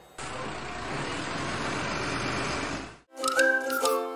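A steady rushing noise fades out about three seconds in. A bright jingle with a whistled melody then starts.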